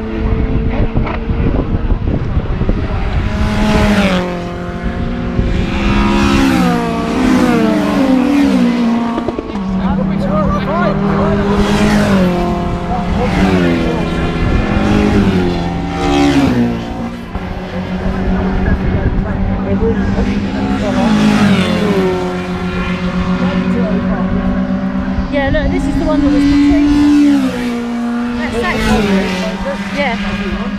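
Racing hatchbacks passing one after another at speed. Their engines rev hard, and the note steps in pitch with each gear change as each car comes by and fades.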